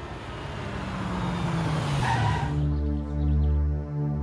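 A car driving past: its noise swells and its engine note falls as it goes by. About two and a half seconds in, the car sound gives way to a steady sustained synth music drone.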